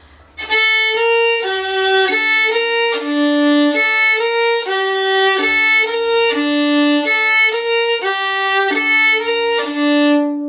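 Solo violin bowed, playing a melody phrase as a steady string of short notes in the middle register, starting about half a second in.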